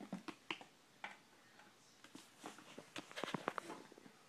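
Handling noise: scattered faint clicks and taps as small plastic toy figures are picked up and moved by hand, with a quicker run of taps near the end.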